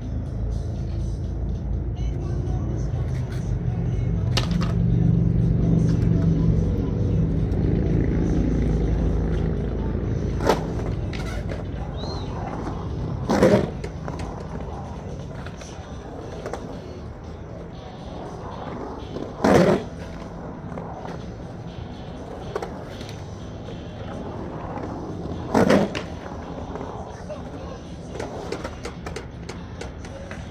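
Skateboard wheels rolling and carving around a concrete bowl, a steady rumble that is loudest in the first third of the clip. Several sharp knocks of the board or trucks against the concrete come in the second half, about six seconds apart.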